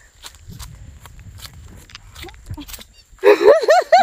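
Footsteps on dry grass and dirt, then about three seconds in a woman bursts into loud, high-pitched laughter in quick repeated peals.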